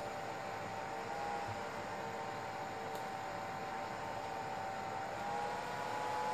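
Cooling fan of a Selco Genesis 140 inverter welder running with a steady whir and a faint steady tone. The pitch steps up slightly and it gets a little louder about five seconds in. It is the sign that the welder's power supply is working again after the repair.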